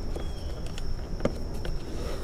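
Handling noise of a dash cam cable being tucked by hand behind the car's door seal and pillar trim: faint scattered clicks and rustles, with a thin steady high tone behind.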